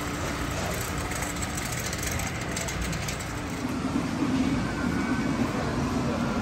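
Warehouse store background noise: a steady rumble with a low hum that stops about a second and a half in, faint rattling clicks around two to three seconds in, and a louder stretch from about four seconds in.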